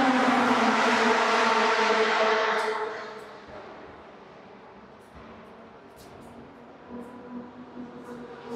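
A racing car's engine running hard on the circuit outside, loud for the first three seconds and then fading away into a faint, distant engine drone.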